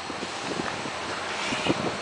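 A steady rushing hiss with scattered soft knocks, the sound of a handheld camera's microphone being rubbed and handled as it moves in close to a tire.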